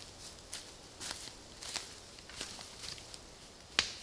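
Footsteps crunching and crackling on a dry forest floor of twigs and pine needles, an uneven step about every half second, with one sharp crack near the end.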